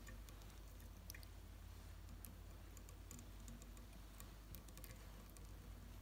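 Near silence with faint, scattered light ticks: small handling noises as fingers wind a fine rib around a fly hook held in a tying vise.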